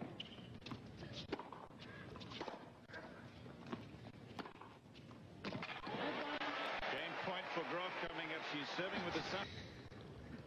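Tennis ball struck by rackets in a baseline rally, sharp hits about every second with quieter bounces between them. Then the stadium crowd cheers and applauds for about four seconds at the end of the point.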